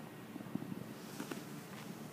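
Quiet room tone with a faint steady low hum and a few soft clicks.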